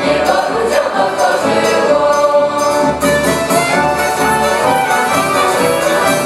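Mixed choir of a Polish folk song-and-dance ensemble singing a Christmas carol (pastorałka) in full voice.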